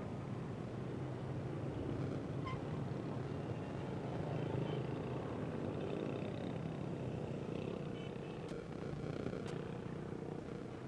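Steady low rumble of a large vehicle engine running.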